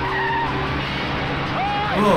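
Film car-chase soundtrack: vehicle engines running hard and tyres skidding on a dirt road, mixed with background music.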